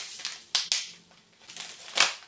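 Paper seed packets rustling and crinkling as they are handled, in a few short crackly bursts about half a second in and again near the end.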